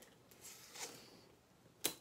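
Faint rustling from hands handling a sealed plastic model kit box, then a single sharp click near the end.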